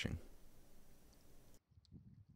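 The end of a spoken word, then a faint, even hiss of room tone that cuts off abruptly; a couple of faint ticks near the end.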